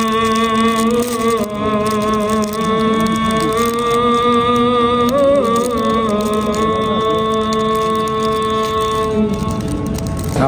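Islamic vocal chanting: a single man's voice holding long, drawn-out notes with slight wavering, with brief breaks about a second and a half in and again around five to six seconds in.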